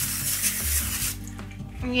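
Aerosol nonstick cooking spray hissing from the can, stopping about a second in. Background music plays underneath.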